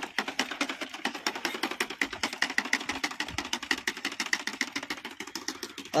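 Hand-pushed single-wheel seed planter rolling over tilled soil while sowing peanuts. Its wheel-driven seed-metering mechanism makes rapid, even clicking. The seeds are now being metered correctly, no longer dropping ten at a time.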